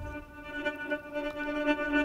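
Native Instruments Straylight granular synthesizer playing a sustained ambient drone: one held pitch with a stack of steady overtones, set to give the grains some texture.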